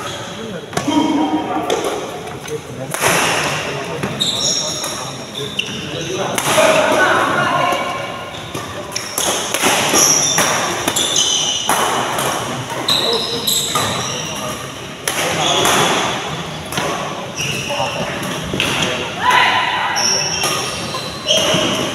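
Badminton rally: repeated sharp racket strikes on the shuttlecock, with short high squeaks of court shoes on the mat between them.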